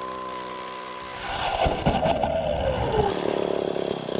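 Engine-driven ice auger drilling a hole through lake ice. It runs steadily, then grows louder about a second in as the blades bite, and its pitch sinks under the load while chipped ice and slush churn around the spiral.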